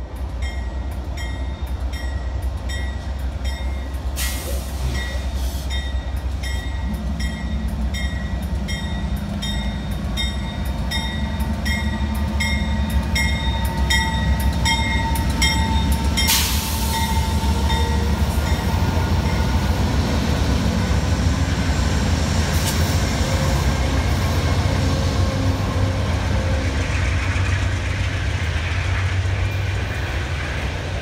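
Amtrak GE P42DC diesel locomotives pulling a passenger train past at speed: a steady deep engine and rail rumble, with the locomotive bell ringing in even strokes through about the first half. The Superliner cars then roll by with wheel and rail noise.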